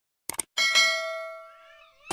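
Subscribe-button animation sound effect: two quick mouse clicks, then a bright bell ding that rings out and fades over about a second and a half.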